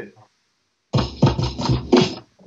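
Drum break played from vinyl being beat juggled across two turntables and a DJ mixer: the beat cuts out for about half a second, then comes back in as a quick run of drum hits.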